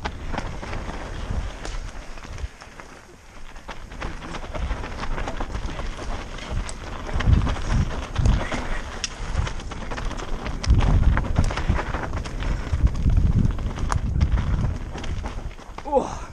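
Mountain bike descending a dirt forest trail, heard from a camera on the bike: tyres running over dirt and roots, with irregular clicks and rattles from the bike and low wind buffeting on the microphone, busiest in the second half.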